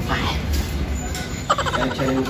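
A man's voice: a short exclamation just after the start, then a rapidly pulsing, laugh-like burst from about one and a half seconds in.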